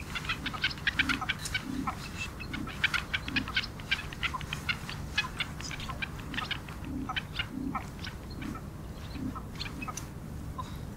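Ruff calling while feeding: soft, low, short calls about once a second, among a dense run of short, sharp high ticks.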